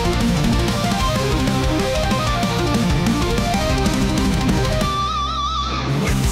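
Instrumental passage of an AI-generated heavy power metal song: electric guitar lead lines over distorted guitars, bass and drums. About five seconds in the band drops away under one held lead note with a wide vibrato, and the full band comes back in at the very end.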